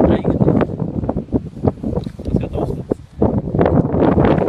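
Strong wind buffeting the microphone in uneven gusts, a deep rumbling noise that surges and drops, with a man's voice partly buried under it.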